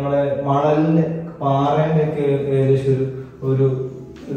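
A man talking with few pauses, in a drawn-out, sing-song delivery.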